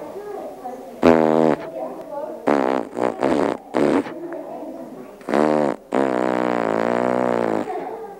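A man blowing raspberries with his lips pressed into a kinkajou's fur: a string of loud buzzing blows, short ones at first, then a long one of nearly two seconds near the end.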